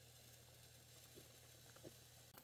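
Near silence: faint room tone with a steady low hum and two faint small ticks in the second half.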